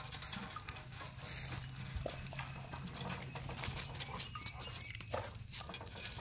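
Faint, irregular small clicks of plastic zip ties being threaded and pulled tight, fastening a wire suet cage to a mushroom anchor.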